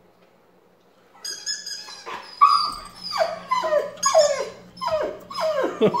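Siberian husky whining and yowling: a run of short cries, each falling in pitch, starting about a second in and repeating quickly, as the dog begs for a squeaky toy.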